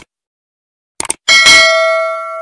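Subscribe-button animation sound effect: short clicks, then a bright bell ding about a second and a quarter in that rings on and fades away.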